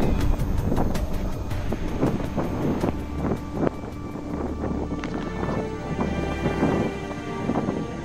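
Wind rumbling on the microphone with scattered rustles and knocks, under soft background music holding sustained tones. It is louder in the first seconds and eases down.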